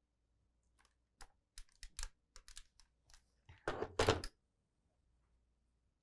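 Handling noises from fabric pieces and a small pressing iron: a run of light clicks and taps, then a short louder rustle about three and a half seconds in.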